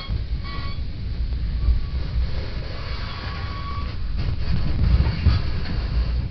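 Metra Rock Island commuter train car running along the track, a steady low rumble heard from inside the car, with a faint thin high tone coming and going.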